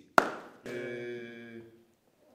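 A single sharp knock, then a held vocal note lasting about a second that fades out, like a chanted response to a spoken curse.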